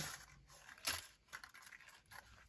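Faint, brief rustles and light handling noises, a few separate ones, as of paper and cardboard packaging being moved by hand.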